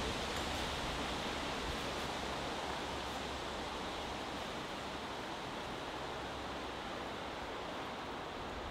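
Steady wind through woodland trees, an even hiss like distant surf, with a little low buffeting of wind on the microphone at the start and a few faint rustles.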